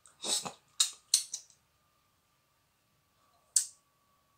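A few short, hissy breathy noises from a person close to the microphone, sniffs or breaths through the mouth: three quick ones in the first second and a half and one more near the end. A faint steady high hum runs underneath.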